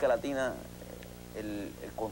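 A man speaking: a phrase ends in the first half second, then after a short pause come a few quieter words, over a low steady hum.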